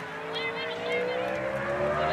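A motor vehicle's engine running with its pitch rising slowly and steadily, as when it gathers speed.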